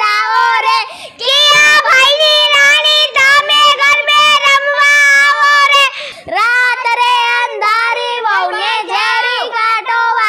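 A child singing in a high voice, holding long notes with a wavering pitch, with short breaks about a second in and about six seconds in.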